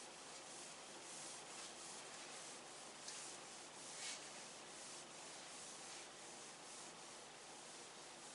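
Faint rustling handling noise over a steady hiss, with a couple of slightly louder brushes about three and four seconds in.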